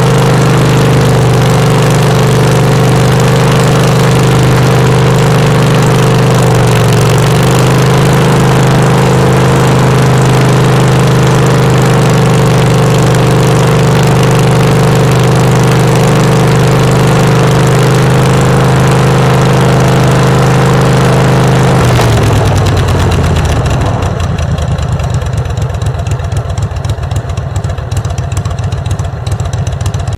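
Craftsman garden tractor's Kohler Command CV20S V-twin engine running steadily at speed; about 22 seconds in it drops in pitch and settles into a slower, pulsing low idle.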